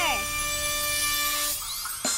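Cartoon magic sound effect for a glowing power band: a held shimmering chord over a sparkly hiss that fades after about a second and a half, then thin rising sweeps near the end. At the very start a voice trails off, falling in pitch.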